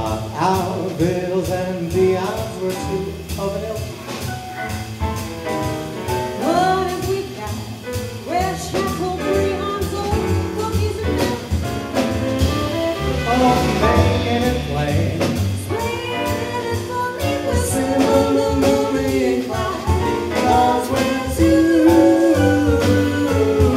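Live small-group jazz with piano, double bass and drums, and a wordless lead melody line over the rhythm section.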